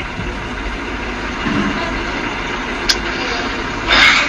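Steady rumbling background noise, like an idling vehicle engine, with a faint voice about one and a half seconds in and a brief click near the three-second mark.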